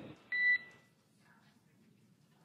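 A single short electronic beep on the mission radio loop, about half a second long, right after a transmission ends; it marks the end of the radio call. Faint hiss follows.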